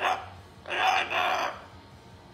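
Moluccan cockatoo mimicking talk: a short 'ya' at the start, then a longer hoarse two-part 'ahhh' from about three-quarters of a second in.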